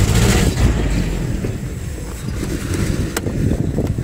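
Outdoor ambient noise at a busy car market: a loud, irregular low rumble with no clear voices, and a single sharp click about three seconds in.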